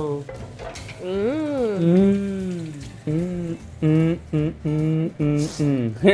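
A woman's long, sliding appreciative "mmm" as she smells a plate of freshly fried vegetables, followed by a run of short laughs, with a pan sizzling on the stove underneath.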